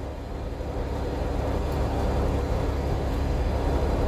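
Steady low engine and road rumble inside a truck cab while driving, growing slightly louder over the first couple of seconds.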